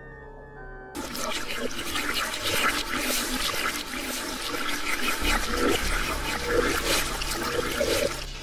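A loud, dense rush of water-like noise sets in about a second in and carries on, with low steady held tones underneath. The first second holds only the held tones.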